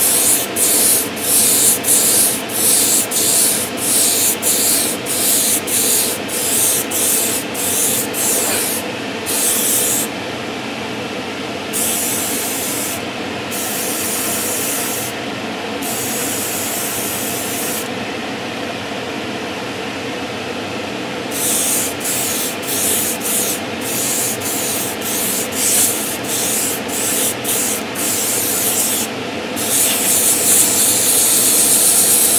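Airbrush spraying satin varnish in short bursts, about two a second, with longer continuous passes and a pause of a few seconds midway, over the steady rush of a spray booth extractor fan.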